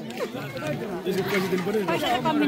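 Speech only: people talking close by amid the chatter of a crowd.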